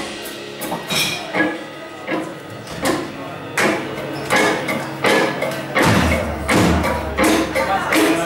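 Live rock band playing a quieter passage of the song: the loud full-band sound dies down in the first second or two, then drum hits keep a steady beat about every three-quarters of a second under softer guitar.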